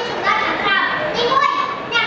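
Speech only: a young boy giving a speech into a microphone, his voice carried over the stage sound system.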